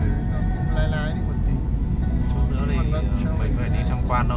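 Steady low rumble of road and engine noise inside the cabin of a moving Mercedes-Benz car.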